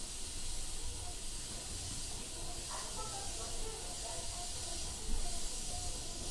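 Cabin sound inside a Meitetsu 4000 series commuter train car: a steady hiss over a faint low rumble, with a slight swell about five seconds in.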